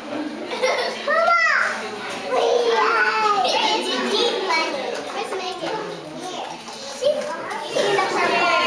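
Young children's voices chattering and calling out over one another, with a few high, sweeping cries standing out.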